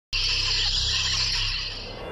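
Intro sound effect for an animated logo: a steady hissing whoosh over a low rumble that starts abruptly and fades away near the end.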